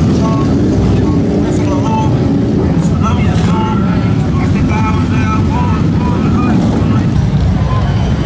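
Motorcycle engines rumbling steadily as bagger motorcycles ride slowly past, with crowd voices over the top.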